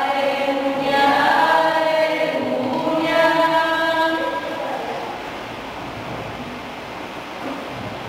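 Voices in a church singing a sustained phrase of the responsorial psalm, which dies away about halfway through. A steady, fainter background hiss remains after it.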